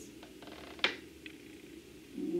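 A whiteboard pen being handled at an interactive whiteboard, making a single sharp click about a second in and a few faint ticks, over a low steady hum.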